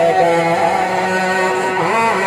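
A man singing a naat into a microphone over a PA system, in a long, melodic line with sliding pitch.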